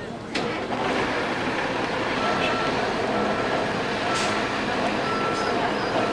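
A vehicle's back-up alarm beeping about once a second, starting about two seconds in, over loud steady street noise that rises abruptly about half a second in.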